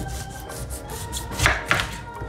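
A large kitchen knife sawing through the tough rind at the end of a whole pineapple on a wooden cutting board, in several cutting strokes. The loudest two come about a second and a half in, as the end slice is cut free.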